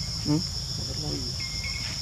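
A steady, high-pitched chorus of insects buzzing continuously in the forest, with a few short chirps about three-quarters of the way through.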